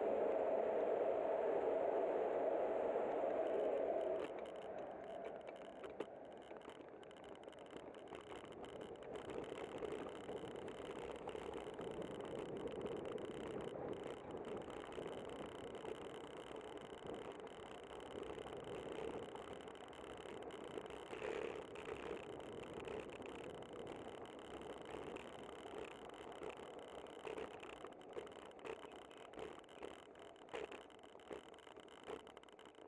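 A BART train running on the elevated track overhead, loud for the first four seconds before it drops away. After that comes steady traffic noise, with light rattling from the bicycle as it rolls along the road.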